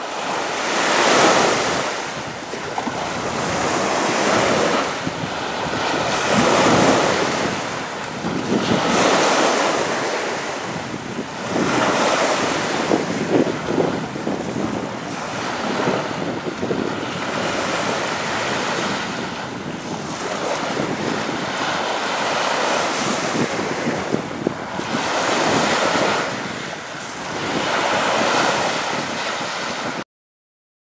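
Sea surf washing onto a beach, the noise of the waves swelling and falling back every few seconds.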